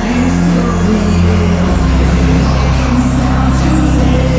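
Loud hardstyle dance music played over a large arena sound system, with a heavy sustained bass that moves to a new note a little under halfway through.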